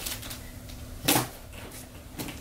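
A kitchen-style knife stabbing into a corrugated cardboard shipping box: one sharp, short hit about a second in, after a faint click at the start.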